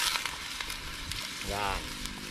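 Duck meat and garlic sizzling in a hot metal wok over a wood fire, the hiss easing at the start after water has just been poured in. A short voice cuts in about one and a half seconds in.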